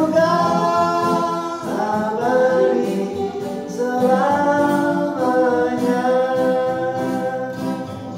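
Acoustic song: male voices singing long held notes together in harmony, with strummed acoustic guitars underneath.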